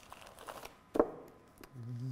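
Plastic bowl cover rustling faintly as it is stretched over a glass mixing bowl, with one sharp snap about a second in.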